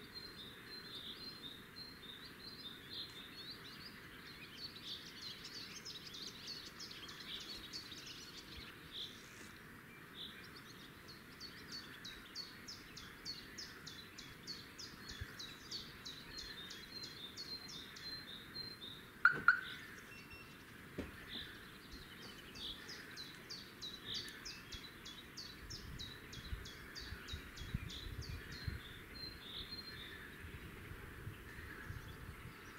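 Fieldfare nestlings begging at the nest: fast runs of thin, high calls repeated many times a second, each run lasting several seconds, with gaps between. About 19 seconds in there is one brief, louder, sharp sound.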